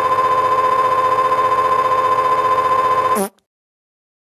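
A loud, steady buzzy tone held on one pitch for about three seconds, then cut off suddenly.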